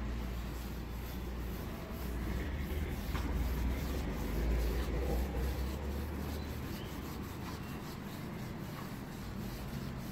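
Paint sponge rubbing paint onto the wooden surface of a nightstand, a steady scrubbing noise. A low rumble runs underneath and fades out about six seconds in.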